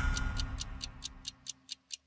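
Clock-like ticking sound effect in a TV programme's title music, about five quick ticks a second. The ticks fade away as the end of the theme music dies out.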